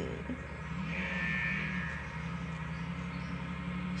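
A steady low mechanical hum, with a faint higher tone for about a second near the start.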